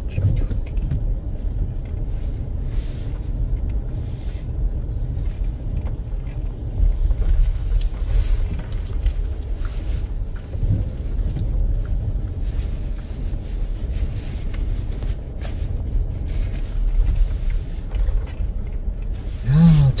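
Low, steady rumble of a car driving slowly on a snow-packed road: engine and tyre noise, with scattered light clicks and knocks.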